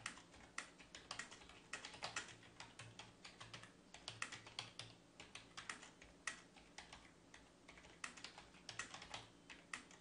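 Faint typing on a computer keyboard: irregular runs of keystrokes with short pauses between them.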